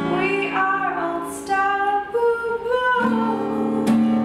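A woman singing over her own acoustic guitar, the strummed chords ringing under the voice. A fresh, fuller strummed chord comes in about three seconds in.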